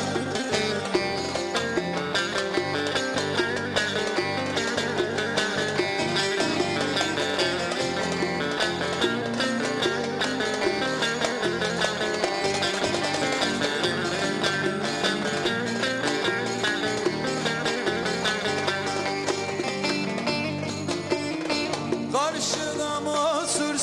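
Instrumental break in a fast Ankara folk dance tune: bağlama (saz) playing quick plucked melodic runs over a steady drum beat.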